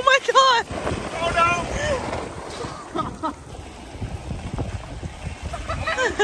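Several short, high-pitched shouts and calls with no clear words, over wind rumbling on the microphone.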